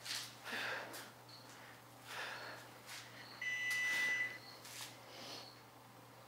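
A person breathing hard under exertion during a set of dumbbell lateral raises, with sharp breaths about every second or two. About three and a half seconds in, a steady high-pitched beep lasts about a second and is the loudest sound.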